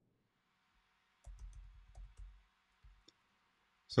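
A run of soft computer key clicks starting about a second in, followed by two more single clicks near the end.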